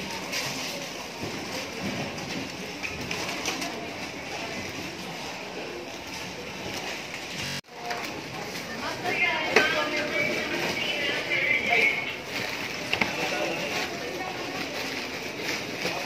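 Supermarket background sound: indistinct voices of shoppers and staff over a steady hubbub. The sound cuts out for a moment about halfway through, then the checkout is busier, with clatter from items being handled and more voices.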